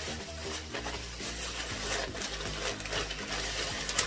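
Plastic shopping bags rustling and crinkling as hands dig through them and pull out a wrapped item.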